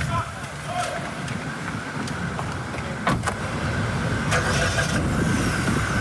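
A car door shuts with a sharp knock about three seconds in, with a second knock just after it, over steady street noise and a car engine running.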